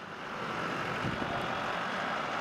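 A convoy of police trucks driving past: steady engine and road noise.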